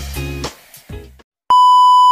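Background music fading out and cutting off about a second in. Then a steady, loud reference-tone beep of the kind that goes with a colour-bars test card starts sharply halfway through and holds.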